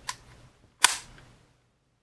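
Luger P08 toggle action being cycled by hand to clear a round, closing with one sharp metallic clack a little under a second in, after a faint click at the start.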